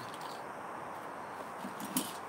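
Quiet rummaging through items in a storage box, with one sharp click near the end.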